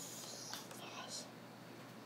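A person whispering faintly: a breathy hiss in about the first second, then only faint room noise.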